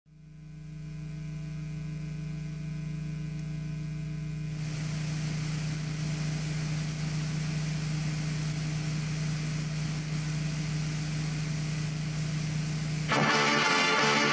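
Steady low electrical hum with a faint hiss that grows louder about a third of the way in. Loud opening theme music cuts in suddenly near the end.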